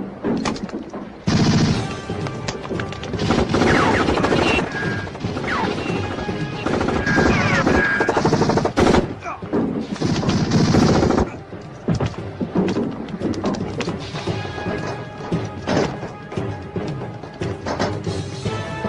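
Film soundtrack of a gun battle: repeated gunshot bursts and impacts, with shouts and cries, over dramatic score music.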